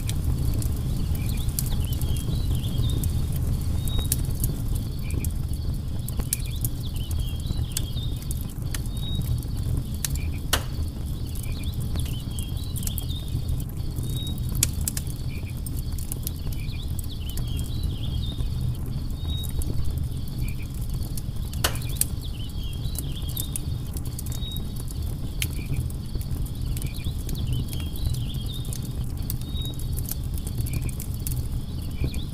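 Log campfire crackling and popping over a steady low rush of flames, with two louder pops, one about a third of the way in and one about two thirds in. Insects chirp faintly in short high clusters every few seconds.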